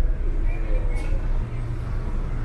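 Steady low rumble of a passenger ferry's engines heard inside the ship's lounge, with faint background voices.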